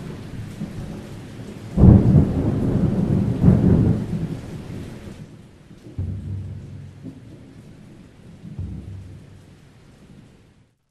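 Thunderstorm sound effect: steady rain hiss with two loud thunder claps about two seconds and three and a half seconds in, then quieter rumbles of thunder after the rain fades out around five seconds.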